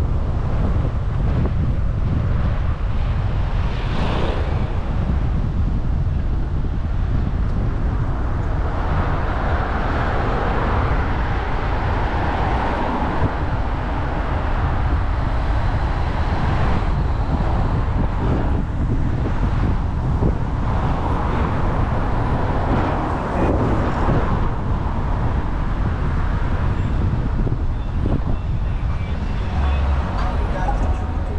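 Wind rumbling over a bicycle-mounted camera's microphone while riding in road traffic, with the noise of cars' engines and tyres swelling and fading as vehicles pass.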